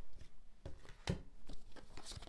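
Tarot cards being shuffled and handled by hand: a few separate light snaps and taps of card stock.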